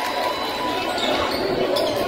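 Crowd chatter filling a basketball gym, with a few thuds of a basketball bouncing on the hardwood court.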